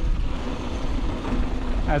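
A Polygon Siskiu T7 mountain bike rolling fast down sandy dirt singletrack: a steady low rumble of wind on the microphone, mixed with the tyres running over the trail.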